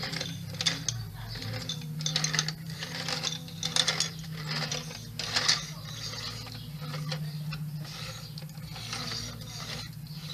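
Plastic wheeled push-along toy rolled back and forth over a paved floor, its wheels and mechanism making rapid, irregular ratcheting clicks. A few louder clacks come between two and four seconds in and again at about five and a half seconds, over a steady low hum.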